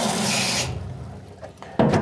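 Tap water running into a plastic paint-sprayer reservoir as it is filled for rinsing; the flow cuts off about two-thirds of a second in, leaving only faint sound after.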